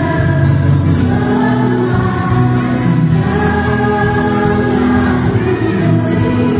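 A Christian song with a group of voices singing together over instrumental backing, steady and continuous, the music for a children's dance routine.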